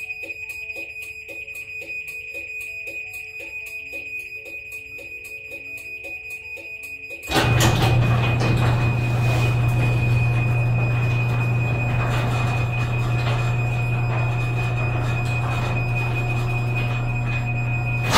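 LiftMaster garage door opener sounding rapid, evenly spaced warning beeps before a remote close from the MyQ app. About seven seconds in, the opener's motor starts and runs steadily with a low hum as the door travels down.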